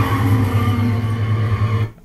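Film soundtrack of a highway scene playing through the TV speakers: steady truck and car engine and road noise, loud and low. It cuts off abruptly near the end as playback is stopped.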